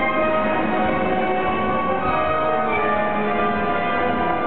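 Orchestra playing a waltz for the dancers, with strings holding sustained notes.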